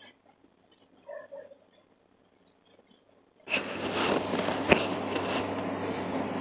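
Near silence for about three and a half seconds. Then a steady hiss with a low hum starts abruptly, broken by a few sharp clicks of a metal ladle against a pressure cooker.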